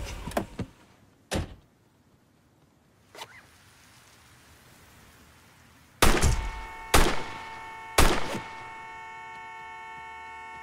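A knock, then three gunshots about a second apart, each ringing on briefly. A car horn starts with the first shot and keeps sounding steadily, held down by the slumped driver.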